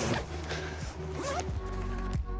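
A fabric backpack is handled, its material rustling and scraping, after a short laugh at the start. Background music with steady sustained notes comes in near the end.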